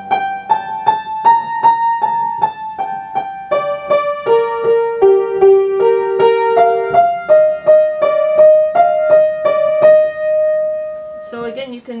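Steinway & Sons grand piano played with the right hand alone: a single-note melody at an even pace, about two to three notes a second, starting on a high G, falling and rising again, and ending on a long held D.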